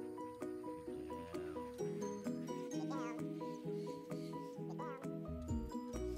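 Background music with a steady beat of short pitched notes and a bass line entering about two seconds in. A wavering, warbling high sound rises over it twice, about three seconds in and again near five seconds.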